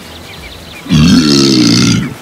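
A man's long, loud belch after gulping a canned fizzy drink. It starts about a second in and holds for about a second.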